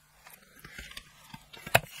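A plastic makeup palette being handled, with small scrapes and taps and one sharp click near the end.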